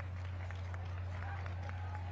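A steady low hum under faint, indistinct voices.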